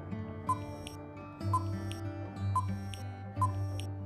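Background music with a countdown timer's tick sound effect, four short ticks about a second apart.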